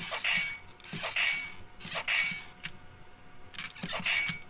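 The arm-swinging action mechanism of a 12-inch talking Archer action figure being worked by hand, giving four short plastic mechanical bursts about one a second.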